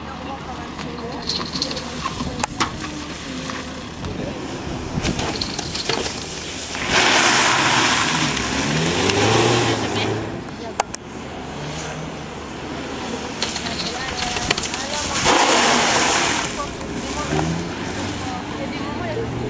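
Audi A1 hatchback being driven hard on a show course: the engine is revving, with two loud rushes of tyre noise as the car slides, one about seven seconds in lasting some three seconds and a shorter one about fifteen seconds in.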